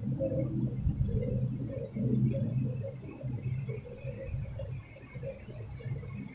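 A low, muffled murmur of students' voices reciting quietly in the room, away from the microphone.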